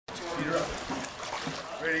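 Voices talking over the steady slosh and trickle of pool water stirred by people moving through it waist-deep; a man calls "Ready" near the end.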